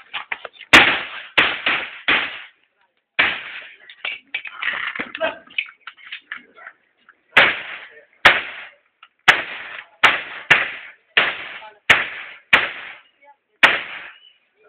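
A string of about fifteen handgun shots fired in a practical shooting course of fire, in quick singles and pairs with a gap of a few seconds in the middle, each crack with a short echo off the surrounding block walls.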